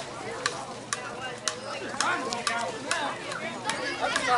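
A run of sharp clicks, about two a second at first and then quicker and uneven, over faint background chatter.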